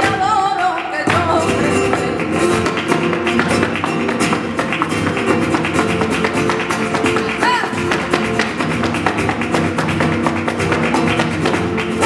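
Live flamenco: acoustic guitar playing under rapid percussive strikes from the dancer's footwork and hand claps. A sung line fades out about a second in.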